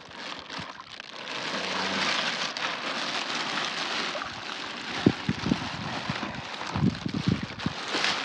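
Water pouring and splashing out of a large plastic bag into a pond as tilapia are released, with the bag's plastic crinkling. A run of sharp splashes and knocks comes in the second half.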